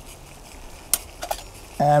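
Light metal clinks of camp-pot lids being set down, once about a second in and twice more just after, over a faint steady hiss from pots of water at a rolling boil on wood-burning stoves.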